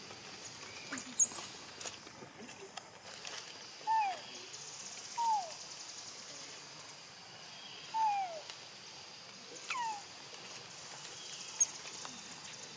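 Four short animal calls, each falling in pitch from about 1 kHz, a second or more apart, over a steady high insect buzz. A sharp, high chirp about a second in is the loudest sound.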